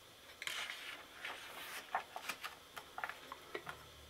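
Faint rustle of a paper book page being turned by hand, followed by a few light ticks.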